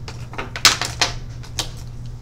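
About four sharp, irregular clicks and taps, the loudest about two-thirds of a second in, over a steady low hum.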